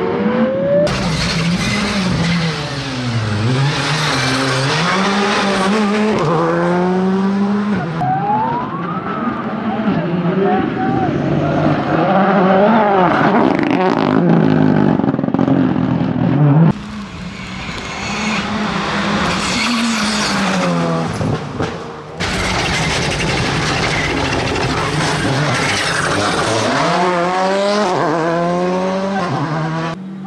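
Rally cars' engines revving hard and falling back through gear changes as they pass, heard in several separate shots with sudden cuts between them.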